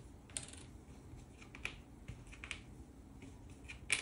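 A few faint, sharp clicks and taps at irregular times, the loudest near the end: cardboard game tokens and pieces being handled and set down on a board game.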